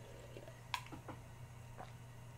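Faint gulping and swallowing as a man drinks a palate cleanser down from a glass in one go: a few small wet sounds, the sharpest just before the middle, over a low steady hum.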